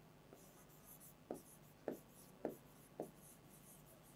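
Faint pen strokes and taps on a whiteboard as words are written: four short taps about half a second apart in the middle, otherwise near silence.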